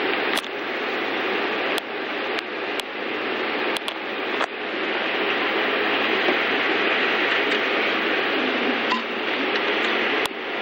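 A steady hiss, with a few faint clicks in the first half.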